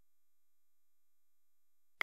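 Near silence, with only a few very faint steady tones.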